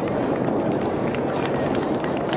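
Drift car engine running hard and tyres sliding on the tarmac as the car drifts past, heard as a steady, dense rush of noise.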